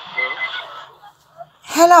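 Voices over a phone video call: a short stretch of muffled sound and voice at the start, then a loud 'hello' near the end.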